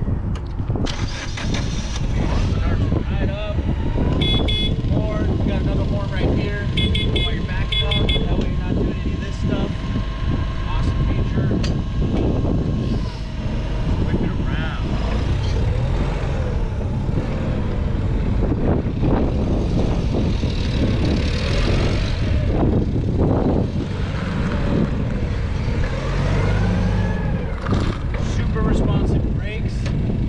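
Doosan GC25P-5 propane forklift's engine starting about a second in, then running steadily as the forklift drives forward and back. There are a few short runs of high beeps a few seconds in.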